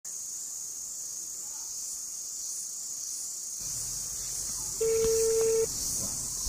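Steady high-pitched chorus of insects in a dry forest, with a single short steady tone, about a second long, sounding near the end.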